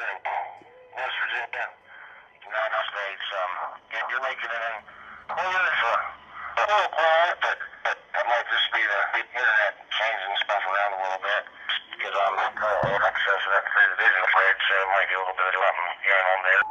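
Another station's voice received over FM through an amateur radio transceiver's speaker, thin and tinny like a phone line, in bursts of speech with short breaks.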